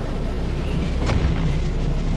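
Sound effect of a giant robot's heavy footstep thudding into snow about a second in, over a steady low blizzard wind.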